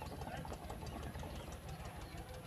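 Faint, steady low rumble of a small motor running.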